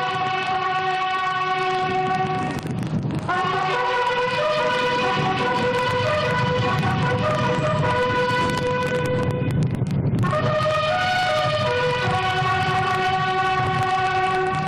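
Military buglers sounding a slow ceremonial call on bugles, long held notes stepping from pitch to pitch, with short breaths between phrases about three seconds in and near ten seconds.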